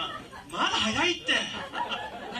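A person chuckling and laughing, with some speech-like voice.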